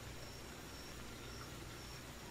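Faint steady background noise: a low hum and hiss with a thin high tone, and no distinct event.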